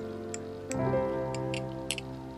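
Background music, with a few light, irregularly spaced clicks of a small metal spatula against a cream jar as cream is scooped out.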